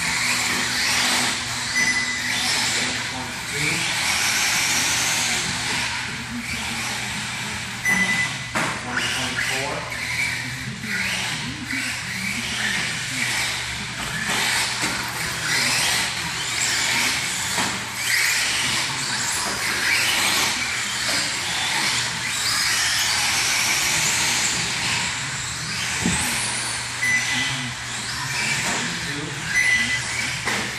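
Radio-controlled short course truck lapping an indoor dirt track: its motor whines up and down with the throttle over tyre and dirt noise, and a few short high beeps sound now and then.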